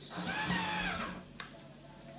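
Cordless drill-driver running for about a second as it drives a small screw into an OSB panel, its whine rising and then sinking as it slows. A short click follows.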